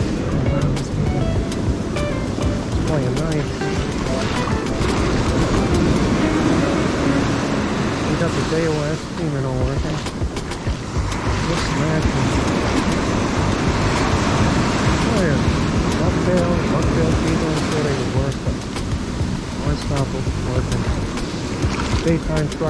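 Surf breaking and washing up the sand in a steady rush, with a wavering pitched sound rising and falling over it at times.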